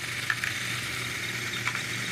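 Small DC motor driving a laser-cut mini conveyor's polyurethane belt, running steadily: a low hum with a faint high whine over a light hiss, and a few faint ticks.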